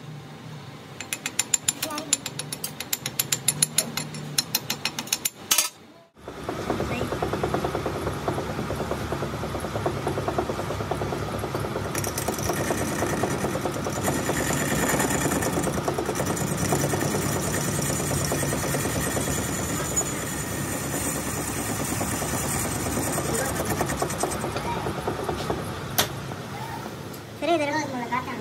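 A rapid run of sharp clicks for about five seconds, then a short break. After that a metal lathe runs steadily, turning down the weld on a two-piece repaired gearbox pinion shaft.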